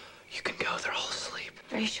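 Whispered speech, then a hushed voice beginning a question near the end.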